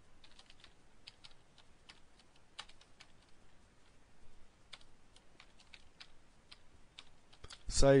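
Computer keyboard typing: quiet, irregular keystrokes scattered through the stretch as code is typed.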